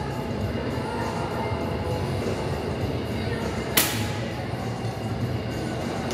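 Steady low rumble of gym background noise with faint music in it, and one sharp clack about four seconds in.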